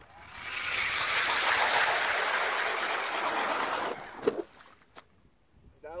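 StrikeMaster Lithium 40-volt battery-powered ice auger drilling through about 10 inches of lake ice: a steady noisy grinding for about four seconds, then it stops. A short knock follows soon after.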